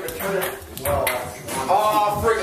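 Table tennis ball clicking off the table and paddles a few times during a rally, with people's voices alongside.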